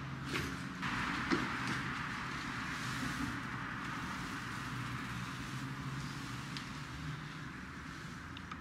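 Steady night street ambience: a low hum of distant traffic with a hiss that swells about a second in, and a few faint soft knocks.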